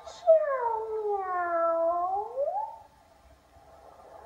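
A person's drawn-out, cat-like "meow" voicing a cat puppet: one long call that slides down in pitch, then swoops back up at the end, lasting about two and a half seconds.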